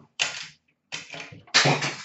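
Cardboard hobby boxes of hockey cards being handled and set down: three short scraping rustles with sharp starts, the last one the loudest.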